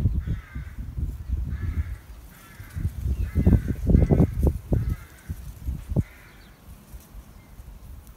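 A bird calling repeatedly: about seven short, harsh calls less than a second apart, stopping about six seconds in. Under the calls runs an irregular low rumbling noise, loudest around the middle.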